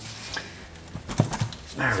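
A few dull knocks about a second in as the stuck thin aluminum valve cover of a Nissan SR20 engine is rocked by hand and breaks loose from its old, hardened gasket.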